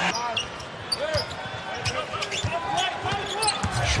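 Arena sound of live basketball play: a basketball bouncing on the hardwood court under a steady crowd murmur with indistinct voices.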